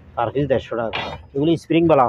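Speech: a person talking in Bengali in short phrases.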